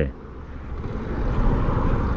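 Riding noise from a Yamaha YZF-R125 sport bike on the move: a steady low rumble of wind and engine with no clear engine note, getting louder over the first second or so.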